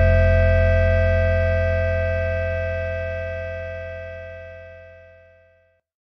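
The final chord of a post-hardcore rock song, guitars and bass left ringing after the band stops, fading steadily and dying away a little before the end.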